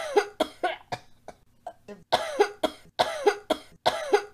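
A person coughing over and over in quick hacking bursts, a few coughs a second, with a pause of about a second early in the run. The coughs are acted for a sick character.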